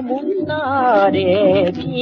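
Late-1930s/1941 Korean popular song (yuhaengga) played from an Okeh 78 rpm shellac record: a female voice sings a falling line with strong vibrato over band accompaniment. The sound is thin, with little in the highs.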